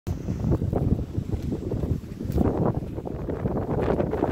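Gusty wind buffeting the microphone, rising and falling unevenly.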